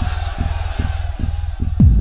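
Electronic dance music: a steady four-on-the-floor kick drum, about two and a half beats a second, under a fading mid-range synth wash. Near the end the kick gets heavier and a crisp click on each beat joins it as the full beat comes in.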